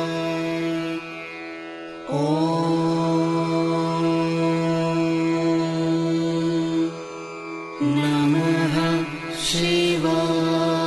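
Devotional mantra chanting: long, held sung notes, dipping in level about a second in and again around seven seconds, with the pitch wavering just before a brief hissed consonant near the end.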